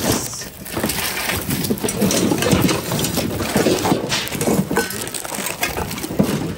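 Hands rummaging through a bin of mixed secondhand goods: plastic items rustling, clattering and knocking together irregularly.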